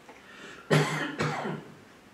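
A man coughs twice, sharply: once about two-thirds of a second in and again half a second later.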